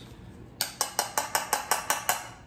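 A quick run of about ten light clicking taps, starting about half a second in, as a small kitchen utensil is knocked to shake lemon zest into a plastic bag.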